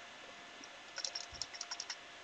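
Computer keyboard keystrokes: a quick run of about eight key clicks starting about a second in, the Enter key pressed over and over.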